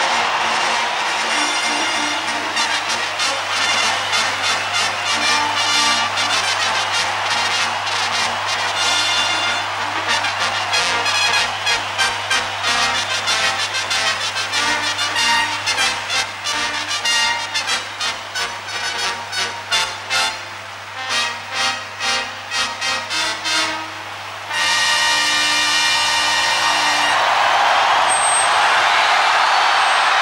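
A brass band plays a ceremonial piece in a large open-air stadium. The crowd's roar rises near the end.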